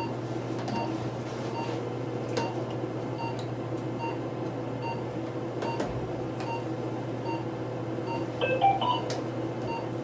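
Steady low hum of running cystoscopy equipment. A faint short pip repeats about twice a second, with a few soft clicks and a brief louder chirp near the end.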